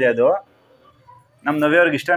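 Speech broken by a pause of about a second, then a long drawn-out voiced sound that runs on into more talk.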